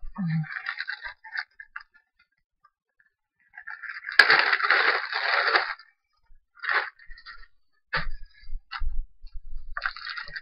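Handling noises from craft materials: scattered clicks and taps, and a crinkly rustle lasting about two seconds in the middle, the loudest sound.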